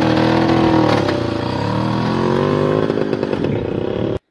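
Small motor tricycle engine pulling away. Its note dips about a second in, then climbs steadily as the trike speeds off, growing slightly fainter as it moves away.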